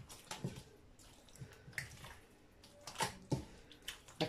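Faint wet squelches and soft slaps as a hand turns and rubs pieces of lamb in a spiced oil-and-vinegar marinade in a stainless steel bowl, several short sounds scattered through.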